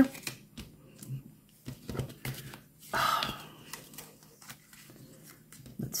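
Cardstock gift tags being handled over a sheet of card, with scattered light clicks and taps as the small die-cut hole pieces are poked out. There is a louder paper rustle about three seconds in.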